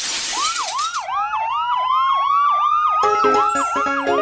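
Electronic siren: a fast yelp rising and falling about three times a second, with a second, slowly rising wail over it. A rush of noise opens it, and musical notes come in about three seconds in.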